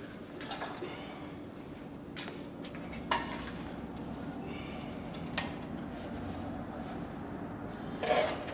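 Scattered clicks and light knocks of leather pieces being handled and set under the presser foot of a Cowboy CB4500 leather sewing machine, over a steady low hum. The sharpest clicks come about three seconds in and again past the halfway point.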